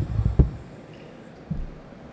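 Low thumps and rumble of a lectern's gooseneck microphone being handled and adjusted, with a sharp knock about half a second in, then quiet room hum.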